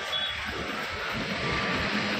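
Street traffic: the steady rush of a road vehicle passing close, growing a little louder, with a few short high beeps near the start.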